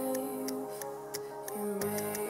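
Background music: held keyboard-like notes over a light, regular ticking beat.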